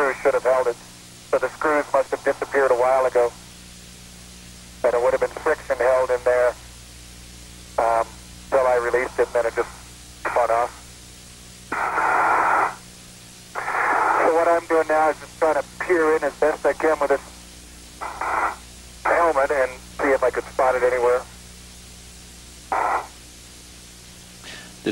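Voices talking over a narrow, tinny space-to-ground radio link, in short exchanges with gaps, over a steady low hum; a brief hiss of radio noise comes about halfway through.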